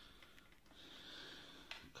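Near silence: faint room tone, with a soft hiss for about a second in the middle.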